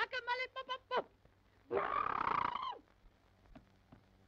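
A cartoon voice gives a quick run of short, high, wavering cries, then after a brief pause a rough, roar-like cry of about a second.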